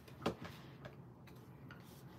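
Cardstock being handled and positioned by hand on a work mat: a few light clicks and taps, the loudest just after the start.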